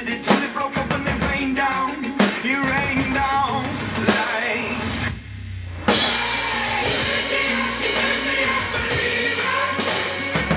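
Drum kit played live with sticks along to a recorded pop-rock song with a singing voice: steady drum and cymbal strokes over the track. About five seconds in the music nearly drops out for under a second, then comes back in full.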